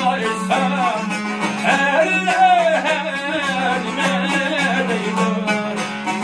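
A man singing a Uyghur folk melody to plucked tambur and dutar, the long-necked lutes strummed together under his voice with a steady low drone.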